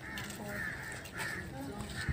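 A bird calling harshly about four times in quick succession, with faint voices underneath.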